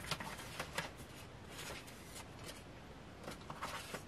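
Faint rustling of paper and cardstock being sorted through by hand, with a few light taps scattered through it.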